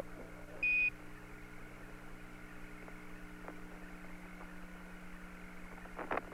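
Apollo air-to-ground radio loop: a single short, high Quindar beep under a second in, the tone that marks the keying of a Mission Control transmission, then the steady low hum and hiss of the open radio channel with a few faint ticks.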